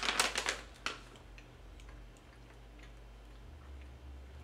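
Plastic cookie wrapper crinkling as it is handled, loudest and densest in about the first second, then a few faint scattered ticks.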